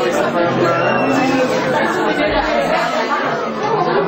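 Several people chattering at once, overlapping voices with no single clear speaker, with music playing underneath.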